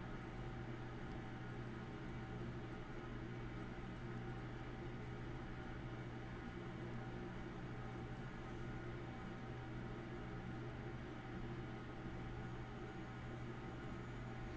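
Faint, steady low hum that does not change at all.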